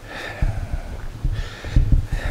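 A man breathing out heavily twice, once at the start and again about a second and a half in, over low irregular thumping on the microphone.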